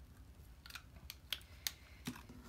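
A few short, light clicks with faint rustling in the second half as adhesive is put onto a small paper piece.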